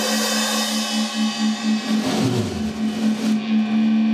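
Live blues band: drum kit cymbals crashing and washing over a held, wavering note with rich overtones. About halfway through, a low note slides down in pitch.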